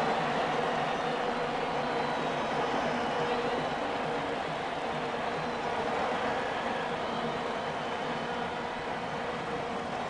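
Steady crowd noise from the stands of a football stadium, an even wash of many voices that slowly gets quieter.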